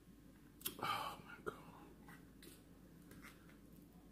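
A woman's breathy, whispered exclamation about a second in, followed by a few faint short clicks over otherwise quiet room tone.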